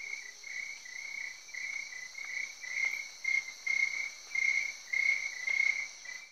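Crickets chirping as a night ambience, a rhythmic chirp about twice a second over a steady high-pitched insect trill, fading near the end.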